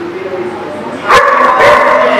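A dog barking twice, loud and sharp, about a second in and again half a second later, over a low murmur of voices.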